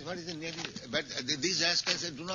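A man's voice speaking, its pitch rising and falling, from the original recording beneath the dubbed narration.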